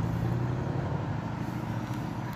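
Audi S6 Avant's engine and exhaust: a loud, steady low engine note as the car drives off, fading gradually as it moves away.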